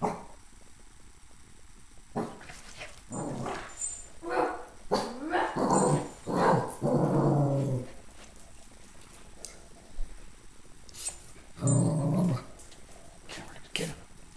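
Small dogs growling and barking in rough play, in bouts about two to eight seconds in and again near the end.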